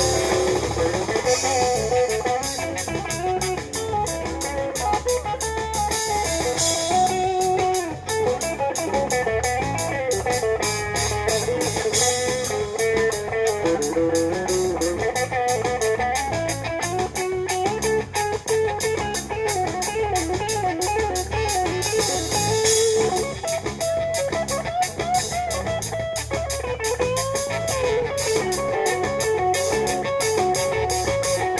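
Live instrumental band music: an electric guitar plays a winding, bending lead line over a drum kit keeping a steady beat on the cymbals.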